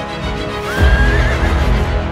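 A single horse whinny rises in pitch and then wavers, laid over background music that grows louder about a second in.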